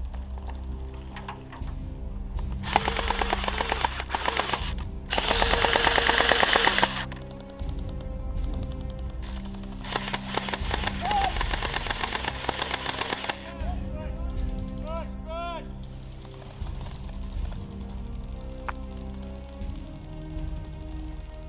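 Background music throughout, with three bursts of rapid full-auto gel blaster fire, a fast even run of snapping shots, in the first two-thirds; the second burst is the loudest.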